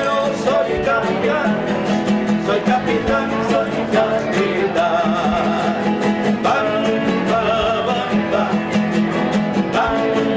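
Two acoustic guitars strummed in a steady rhythm while a man sings with a wavering vibrato, a live guitar-duo performance at close range.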